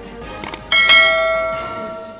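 Subscribe-button sound effects: a quick double click about half a second in, then a bright notification-bell ding that rings out and fades over about a second and a half.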